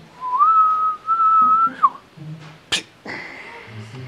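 A man whistling one long note through pursed lips, rising a little at the start and breaking briefly in the middle before it stops. A single sharp click follows about a second later.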